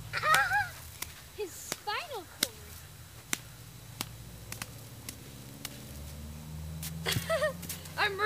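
Children's voices, laughing and calling out, near the start and again near the end, with a string of short sharp knocks roughly every half second to second in between.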